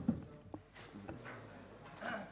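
Quiet press-room background noise, with a couple of short knocks right at the start and another about half a second in.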